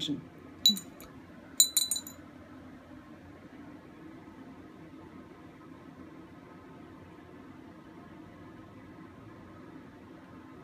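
A few light glass clinks, one about a second in and a quick cluster of them just after, like a glass dye dropper knocking against its dye bottle. Then only faint room tone with a low hum.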